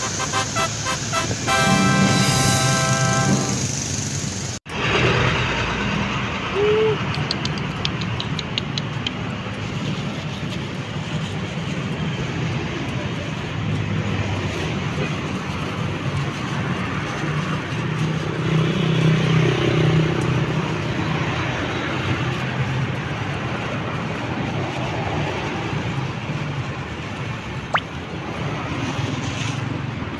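Street traffic noise: a continuous rumble and hiss of passing road vehicles. In the first few seconds a steady pitched tone like a horn or a music sting plays for about three seconds, then cuts off suddenly.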